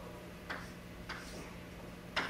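Chalk striking and scraping on a blackboard as short lines are drawn: two sharp taps, about half a second and a second in, over a steady low room hum.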